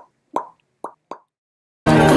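Four short, quick pops, a cartoon-style plop sound effect, over dead silence in the first second or so. Loud talking cuts in abruptly near the end.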